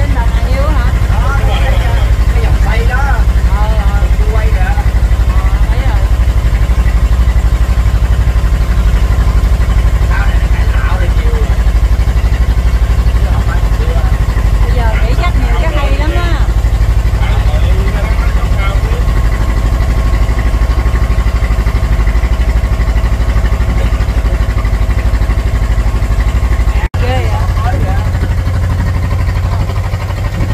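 A boat's engine running with a steady low rumble, with people's voices talking over it at times. The sound drops out briefly near the end.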